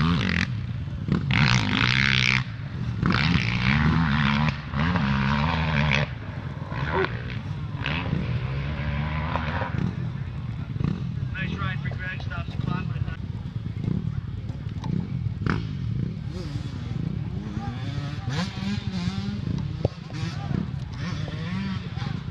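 Dirt bike engines revving in bursts, loudest in the first six seconds, then running on more steadily under the voices of a crowd of spectators.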